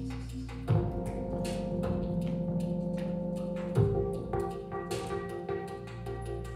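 Live electronic music led by a mutantrumpet, an electronically processed trumpet, over a beat. Deep sustained bass notes shift about a second in and again near four seconds, under a run of quick light percussive ticks.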